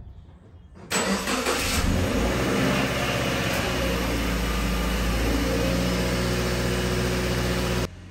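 Car engine starting about a second in, flaring briefly, then settling into a steady idle that cuts off suddenly near the end.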